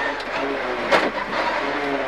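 Rally-prepared Mitsubishi Lancer's turbocharged four-cylinder engine running, heard from inside the cabin as the car slows. There is a single sharp crack about a second in.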